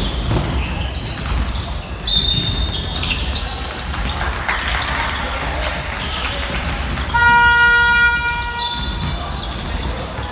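Basketball game in a gym: a ball dribbled on the wooden floor, then a referee's whistle about two seconds in. A gym buzzer sounds for nearly two seconds about seven seconds in, followed by another short whistle blast as play stops.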